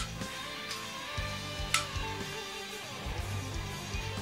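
Recorded electric guitar solo with a band backing, playing back from a video, with sustained guitar notes over a steady low bed. Two sharp clicks sound through it, one at the start and one just under two seconds in.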